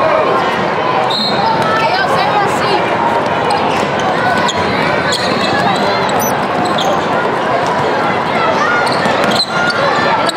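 Basketball game sounds in a large indoor hall: a basketball bouncing on the hardwood court amid steady overlapping chatter from players and spectators.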